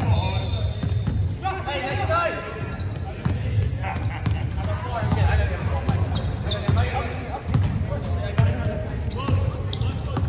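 A basketball being dribbled on a hard indoor court floor, with repeated bounces about twice a second in a reverberant hall. Players' voices call out over it, and there is a brief sneaker squeak at the start.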